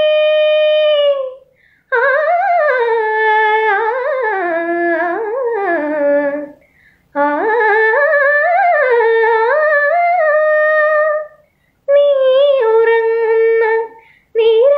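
A woman singing unaccompanied, with no instrument behind her voice: four long melodic phrases with gliding, ornamented turns, broken by short silences for breath.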